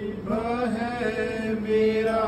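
Sikh devotional chanting: a voice drawing out long, slowly wavering notes without a break.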